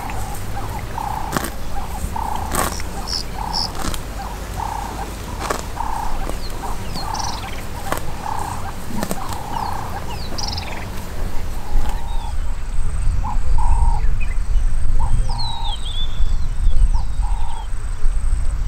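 Cape buffalo cropping grass close by, its bites making sharp tearing rips about every second or so, over a short note repeated about twice a second in the background. About twelve seconds in, the grazing sounds give way to a low rumble and small bird chirps.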